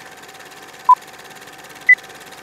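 Film-leader countdown sound effect: short beeps one second apart over a steady hiss and faint hum. One beep comes about a second in, and a higher-pitched beep comes near the end.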